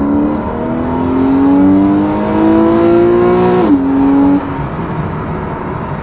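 Porsche 911 (991) Carrera 4's naturally aspirated flat-six with sport exhaust, heard from inside the cabin under hard acceleration: the note climbs steadily in pitch for about three and a half seconds, drops sharply, then gets quieter as the throttle eases.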